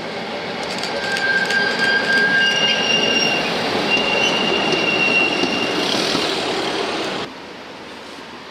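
Articulated city tram rolling past through a curve, its wheels squealing in several high steady tones over the rumble of wheels on rail, louder as it comes close. The sound cuts off suddenly near the end.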